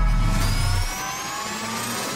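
Logo-intro sound effect: a low boom rumbling away under a synthetic riser, several tones sweeping slowly upward together and building toward a hit.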